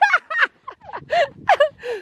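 A woman laughing: a run of short, high-pitched laughs coming in quick bursts.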